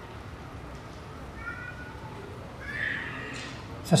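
Two faint, high-pitched animal cries over a low steady background: one about a second and a half in, and a second, rising one around three seconds in.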